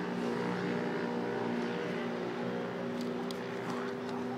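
A steady low mechanical hum made of several steady tones, with a few light clicks near the end.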